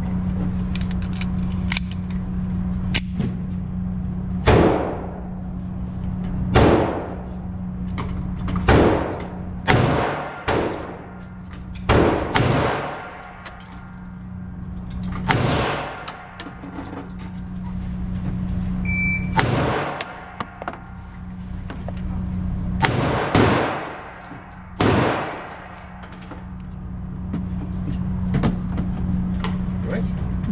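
Pistol shots fired in an indoor shooting range: about a dozen single shots at irregular intervals, some in quick pairs, each ringing off in the enclosed range, over a steady low hum.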